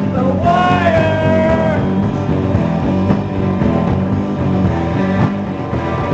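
A rock band playing live on drums and guitars, with a held lead note that bends upward in the first couple of seconds.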